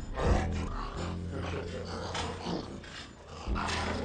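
A zombie growling, a low rough drawn-out snarl, with a loud surge just after the start and another near the end.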